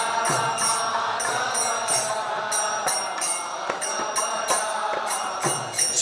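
Devotional kirtan: a group of voices chanting the response, over small hand cymbals (kartals) struck in a steady rhythm of about three strokes a second.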